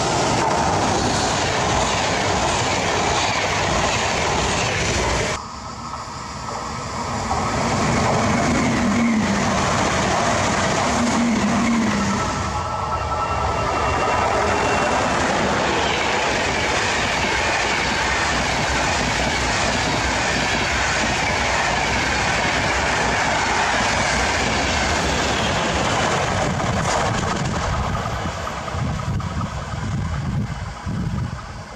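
Electric-hauled passenger train of UIC-X coaches passing at speed: a steady loud rush of wheels on rail. It dips sharply about five seconds in and fades near the end.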